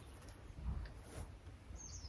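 Quiet background: a faint low rumble with a few soft, brief sounds, and a faint high chirp near the end.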